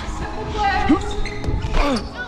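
Indoor volleyball in play: the ball is struck a few times with sharp hits from hands and forearms, among players' shouted calls, echoing in a large gym hall.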